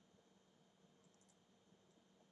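Near silence: faint room tone with a few faint computer-mouse clicks about a second in.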